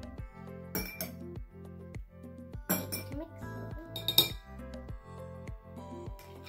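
Metal spoon clinking against a glass mixing bowl while stirring thick slime: a few sharp clinks about a second in, around three seconds and around four seconds, the last the loudest, over background music.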